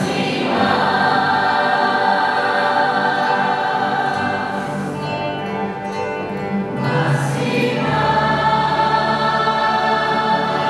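A choir singing a hymn in long, sustained notes, changing chord every few seconds.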